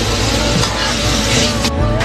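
Cubed food sizzling in hot oil in a frying pan as it is stir-fried with a spatula, a dense steady hiss that cuts off suddenly near the end, with background music underneath.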